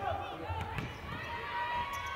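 Basketball game sounds on an indoor court: sneakers squeaking on the floor, a ball bouncing with a few soft thuds, and faint calls from players.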